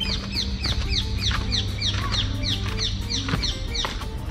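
A bird chirping rapidly, about four short, high, falling chirps a second, over steady background music.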